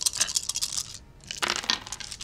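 A handful of ten-sided dice rattling in cupped hands in a rapid run of clicks, with a second, shorter clatter near the end as they are rolled for a dice-pool check.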